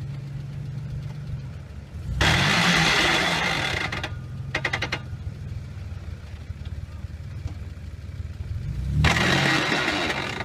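Mitsubishi Pajero's engine idling, then revved hard for about two seconds starting about two seconds in, and revved again near the end. The revs come with no drive reaching the ground: the SUV is crossed up on a ledge with wheels in the air, and there is "no drive anywhere".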